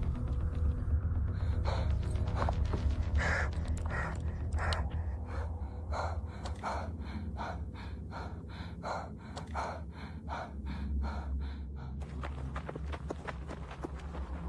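A woman breathing hard in short, repeated gasps, quickening to two or three breaths a second about halfway through and stopping near the end. A low, steady musical drone runs underneath.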